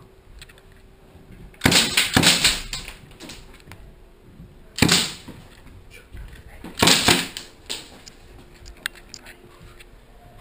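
Airsoft gunfire in a small indoor space: a burst of several shots about two seconds in, a single short burst near the middle, and another burst about seven seconds in.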